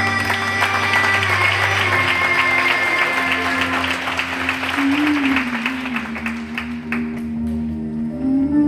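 Audience applause over slow instrumental accompaniment, dying away near the end. A held sung note fades out about two seconds in.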